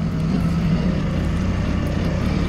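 Doosan 4.5-ton forklift's engine running steadily with a low rumble, heard from inside the cab as the truck turns.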